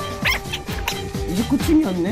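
Background music with a group of young men's voices giving quick, short excited cries while they pile their hands in a hand-stacking game.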